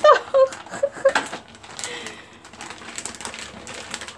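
Sparse light clicks and scrapes from a live crab's legs and claws on a hard surface, in a small room.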